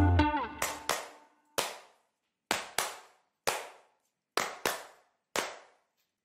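Band music stops just after the start, leaving bare handclaps with a short room echo in a repeating pattern: two quick claps, then a single one, about once every two seconds.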